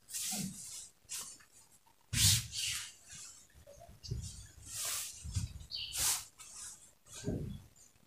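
Printed fabric rustling and swishing as it is folded and smoothed flat by hand on a table, in a series of short, separate swishes.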